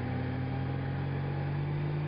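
Touring motorcycle engine running steadily at cruising speed, with wind and road noise, heard from on the bike.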